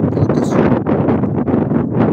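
Loud, gusty wind buffeting the microphone, a constant uneven rumbling rush.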